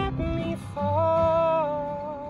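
A man singing over a strummed acoustic guitar: a short sung note, then a long held note about halfway through that fades near the end.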